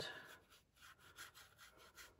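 Near silence with the faint rubbing of a paintbrush laying a dilute watercolour wash on rough watercolour paper, in several short, irregular strokes.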